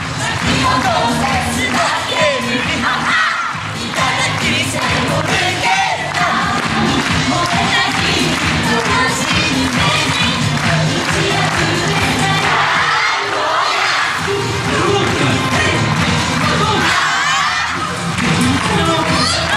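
Yosakoi dance music with singing, mixed with shouts and cheering from the dancers and the crowd.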